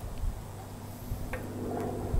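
Low wind rumble on the microphone, with a couple of faint clicks.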